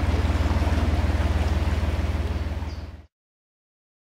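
Narrowboat's diesel engine running at low revs in forward gear, a steady low throb, with the propeller churning water at the stern. It fades out after about three seconds.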